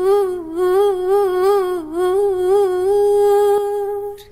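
A high voice humming one long note with a wide, regular wobble in pitch, about three wobbles a second, then holding it steady for the last second.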